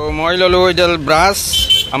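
A person's voice in long, drawn-out, sing-song tones, with a short hiss near the end.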